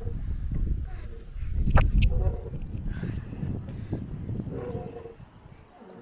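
Uneven low rumble of wind and handling noise on a handheld camera moving on a swing, with a sharp click about two seconds in.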